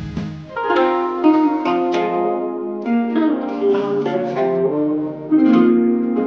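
Guzheng (Chinese zither) played solo: plucked notes ringing and overlapping in a melody, starting about half a second in, with a louder stroke a little after five seconds.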